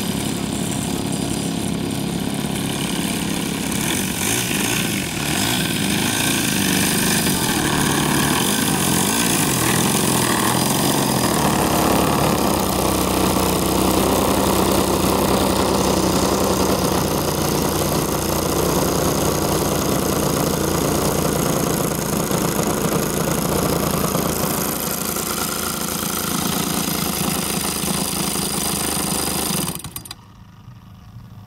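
The engine of a large-scale radio-controlled Yak-55 model aircraft runs steadily at low throttle as the plane taxis in on grass. Right at the end it is cut and stops abruptly.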